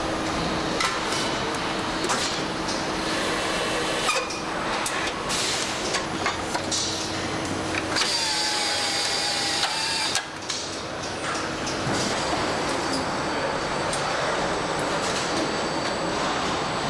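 Car assembly line machinery: a steady mechanical hum with scattered clanks and clicks of tools and parts, and a whine with a hiss for about two seconds in the middle.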